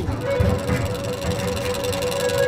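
Cartoon machine sound effect: a toy dice-making machine running after its lever is pulled, a steady mechanical whirring rumble with a held hum over it.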